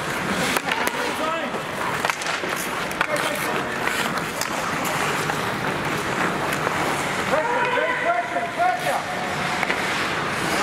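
Ice hockey play: skate blades scraping the ice and sharp clacks of sticks and puck, with voices shouting calls from about three quarters of the way through.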